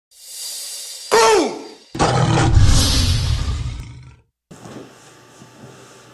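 Intro sound effect of a tiger: a rising whoosh, then a short snarl about a second in and a long, loud, deep roar that fades out just after four seconds in. Low steady hiss follows.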